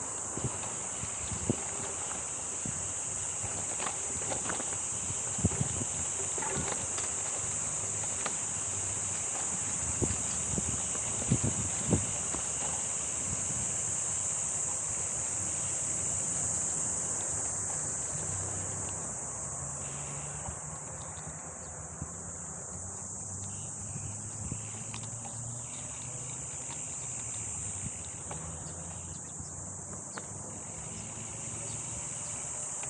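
A steady high-pitched insect chorus over the rolling of a gravel bike's tyres on a dirt trail, with the bike knocking and rattling over bumps several times in the first half.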